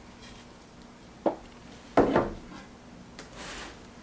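Metal can of denatured alcohol being capped and set down on the workbench: a light knock about a second in, then a louder knock with a smaller one just after, two seconds in. A short soft rub follows near the end as a cardboard box is picked up.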